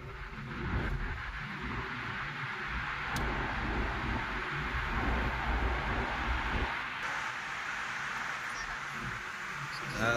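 Car road noise heard from inside the cabin while driving at speed through a road tunnel: a steady hiss of tyres and engine over a low rumble. The rumble drops off about two-thirds of the way through.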